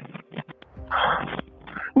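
A person's harsh, breathy, distressed cry over a 911 call's phone line: one half-second outburst about a second in, then a shorter one near the end.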